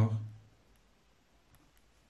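A man's voice trails off in the first half second. Then come a few faint ticks from a pen writing on a paper workbook page.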